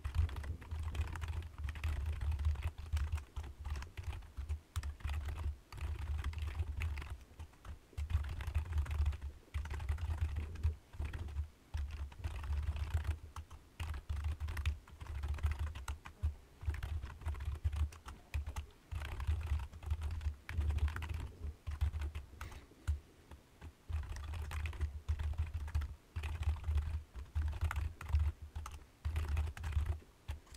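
Typing on a computer keyboard: rapid runs of keystrokes broken by short pauses.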